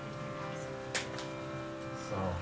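Steady instrumental drone of held notes sounding together, with one sharp click about a second in.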